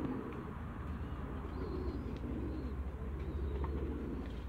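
Muscovy ducks making low, soft wavering calls, over a steady low rumble.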